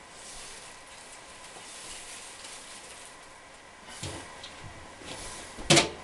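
Faint steady room hiss, broken by a soft knock about four seconds in and a sharp, much louder knock with a brief ring just before the end, as someone moves about near the drum kit and congas.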